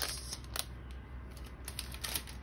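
Faint crinkling and a few light clicks of clear plastic packaging being handled: a cellophane bag and plastic sticker packets.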